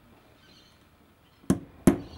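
Two sharp taps of a small hammer, about a third of a second apart and starting about one and a half seconds in, driving the second bearing out of a Mr Steele Silk brushless drone motor held in a vise.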